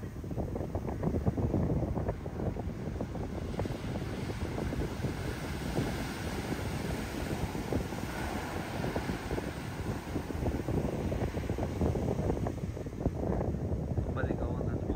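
Wind buffeting the phone's microphone over the low rumble of heavy surf. Midway through, a big shorebreak wave crashes and its whitewater hiss swells, then fades.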